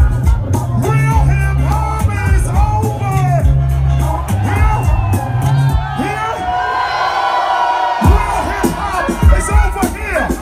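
Live hip hop played loud through a concert PA: a heavy bass-driven beat with vocals and crowd voices over it. The bass drops out about six seconds in and comes back about two seconds later.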